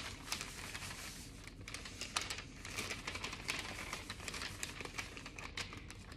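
Parchment paper rustling and crinkling as dry macaron ingredients (almond flour and sugar) are shaken off it into a bowl of batter, with many small scattered ticks.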